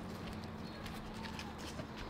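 Footsteps on a dirt path, faint irregular scuffs and taps, over a steady low hum.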